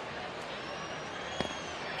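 Steady ballpark crowd murmur, with one sharp pop about a second and a half in: a changeup smacking into the catcher's mitt on a swinging strike three. A faint high whistle-like tone drifts over the crowd.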